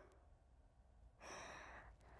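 Near silence, then a single soft breath from a young woman, lasting well under a second, a little past the middle.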